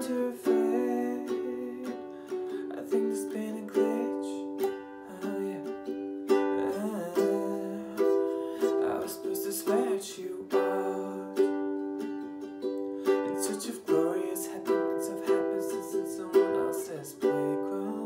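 Acoustic ukulele strummed in chords at a steady rhythm, with a fresh strum roughly every second.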